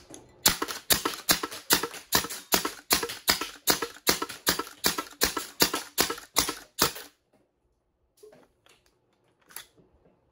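3D-printed semi-automatic HPA (high-pressure air) foam-dart blaster, the Whale Shark prototype, firing darts in quick succession, about three shots a second for some six seconds. The shots stop about seven seconds in, with the magazine nearly emptied.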